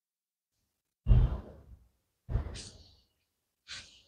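A person sighing three times: once about a second in, again midway and once more, quieter, near the end. Each sigh starts suddenly and fades within about half a second.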